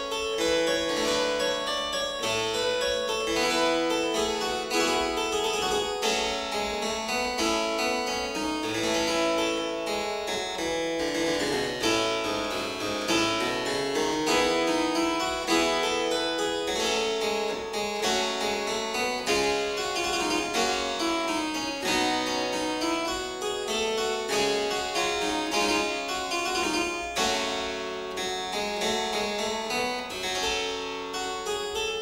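Solo harpsichord playing a continuous passage of quick plucked notes over a moving lower line.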